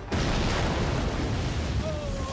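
A large explosion, the train blown up by a plunger detonator: a sudden blast just after the start that carries on as a long rumbling roar. Near the end a high, slightly falling horse whinny begins over the rumble.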